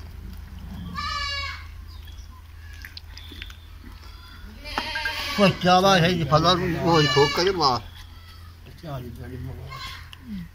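Goats bleating: a short high-pitched bleat about a second in, then louder, quavering bleats from about five to eight seconds in.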